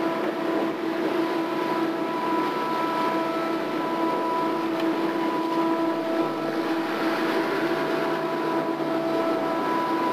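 Steady machinery drone aboard a working tugboat: a constant hum with a higher whine riding over it, along with the rush of churning water.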